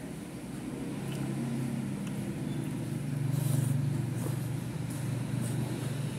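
Low, steady engine hum of a motor vehicle, swelling to its loudest about three and a half seconds in and then easing off, with a few faint clicks of a metal fork against the plate.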